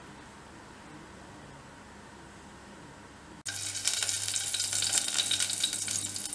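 Quiet room tone for the first few seconds, then, after an abrupt cut, a steady crackling hiss from a pot heating on a lit gas burner.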